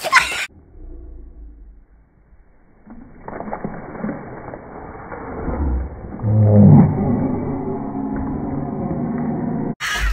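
A sudden slap and splash as water bursts out of a plastic water bottle. This is followed by a slowed-down replay of the moment, heard as low, drawn-out, wavering sounds that swell about three seconds in and peak a little past the middle.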